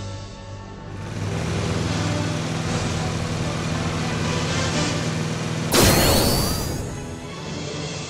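Background music, with a time-travel sound effect about six seconds in: a sudden loud burst with sweeping tones that fades over about a second.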